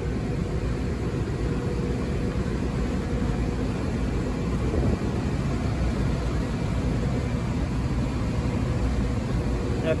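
Steady low mechanical rumble with a faint hum, unchanging throughout, like machinery or a large fan running in the background.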